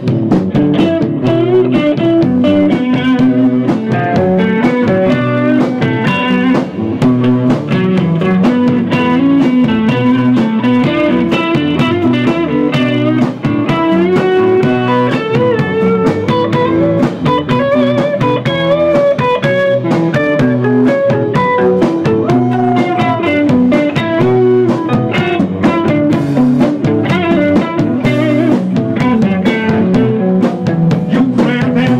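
A live band playing an instrumental passage led by electric guitars, a dense, steady full-band sound with a regular beat.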